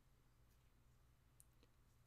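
Near silence: faint room tone, with two faint clicks close together about one and a half seconds in.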